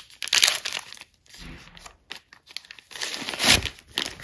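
Soft plastic wet-wipes pack crinkling as a wipe is pulled from it, in short rustling bursts with a louder rustle near the end.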